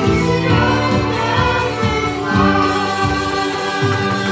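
Children singing a Mandarin worship song together into microphones, over a band accompaniment with a steady drum beat.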